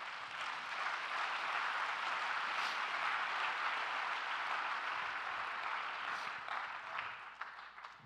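Congregation applauding, building over the first couple of seconds, holding steady, then dying away near the end.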